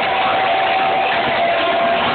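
Loud crowd noise at a live gig, a dense din with a steady held tone underneath.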